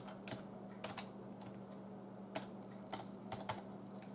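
Computer keyboard keys being pressed in scattered, irregular clicks, as when typing a search, over a steady low hum.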